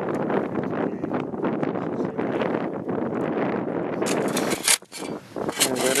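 A steady rushing noise for about four seconds, then a few sharp metallic clinks of a jack being handled.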